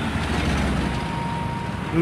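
Low, steady rumble of road traffic, with vehicles passing on a dark road. A faint steady whine sounds briefly in the second half.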